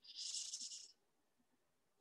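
A person's breath into the microphone: a short, soft hiss lasting under a second.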